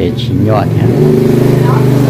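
A motor vehicle's engine running steadily close by, a low, even, pulsing drone that sets in just under a second in, under people talking.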